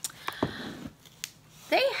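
Small packaged items being handled and picked up: a few light clicks and a soft rustle.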